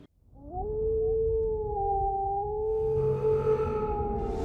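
A single long wolf howl sound effect that rises in pitch at its start and then holds one note. A low hum joins about three seconds in.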